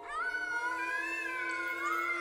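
Electronic tones from algorithmic music software (Max), generated in response to the colour and movement of the painting. Several held notes slide and waver in pitch. One swoops upward right at the start, and a low steady note comes in about half a second in.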